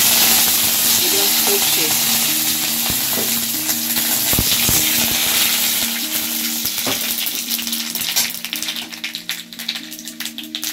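Curry leaves sizzling and spluttering in hot mustard oil in a metal kadai with dried red chillies and bay leaves, loudest as they go in and easing a little over the seconds. A few clicks of the metal spatula against the pan are heard as it is stirred.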